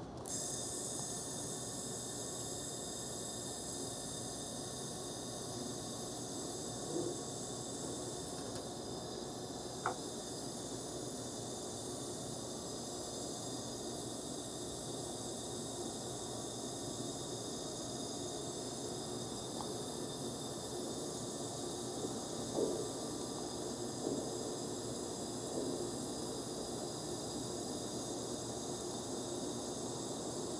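Steady hiss of an IPG LightWELD XR handheld laser welder with wire feed running a bead along an aluminum joint, with a few faint ticks along the way.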